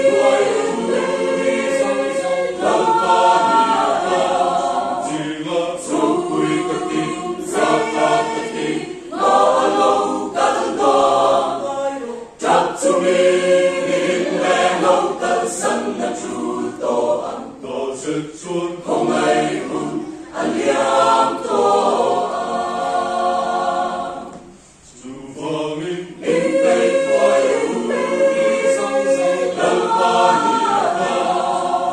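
Mixed choir of men's and women's voices singing in parts, unaccompanied, under a conductor, in sustained phrases with short breaks between them and a brief pause a little before 25 seconds in.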